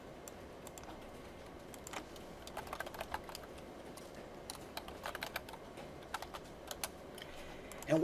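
Computer keyboard typing: faint key clicks in a few short runs as a file name is entered.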